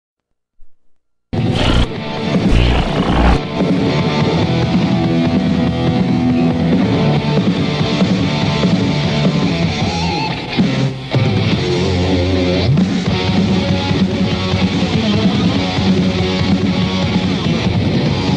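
Heavy metal band playing an instrumental passage on electric guitar, bass and drums, loud and dense. It starts abruptly about a second in, after a moment of silence.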